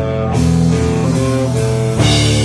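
Rock band playing an instrumental passage between sung lines: electric guitar, bass and drum kit, loud and steady.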